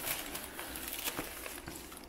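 Faint rustling of a thin rice-paper record inner sleeve being handled, with a few small light ticks.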